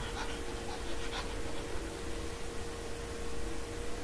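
Low background hiss from the recording with a faint steady hum, and soft breathing close to the microphone in the first second or so.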